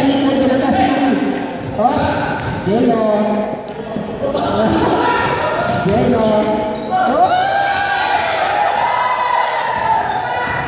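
A basketball bouncing on a hardwood gym floor during play, echoing in a large hall, with voices of players and onlookers calling out throughout.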